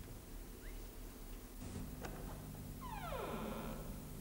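A door creaking open: one drawn-out creak falling in pitch about three seconds in, over a steady low hum.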